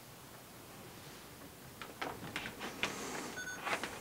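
Faint room tone, then from about halfway in a few small clicks and rustles, like parts or cables being handled on a workbench, with a brief high electronic beep-like tone near the end.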